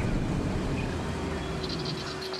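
Mitsubishi pickup truck driving slowly along a woodland track: a steady low engine and tyre rumble that fades near the end.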